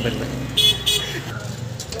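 A vehicle horn sounding two short, high-pitched toots about half a second in.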